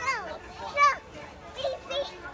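A toddler's high-pitched voice: two short excited calls, each sliding down in pitch, the second the loudest, with a smaller sound near the end.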